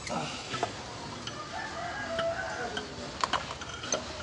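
A rooster crowing in the background, one drawn-out call in the middle. Sharp metallic clicks come from the diesel injection pump being pushed onto its mount on the engine, the loudest a little under a second before the end.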